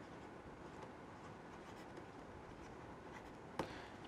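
Faint scratching and tapping of a stylus writing on a tablet screen, with one sharper tick near the end.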